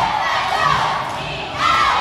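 Cheerleading squad yelling a chant together in a gymnasium, getting louder near the end.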